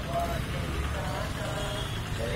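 A group of men's voices singing in held notes over a steady low rumble.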